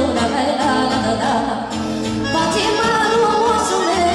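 Live Romanian Banat folk music played by a small amplified band with accordion, with a vocalist singing the melody over a steady bass beat.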